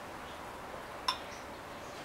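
A single glass clink about a second in: a glass beer bottle tapping the rim of a tall wheat-beer glass as it is tipped to pour, against a steady low hiss.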